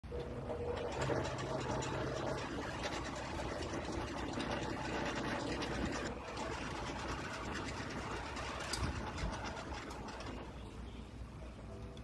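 Large belt-driven electric chaff cutter running: a steady mechanical clatter with many fast clicks over a motor hum.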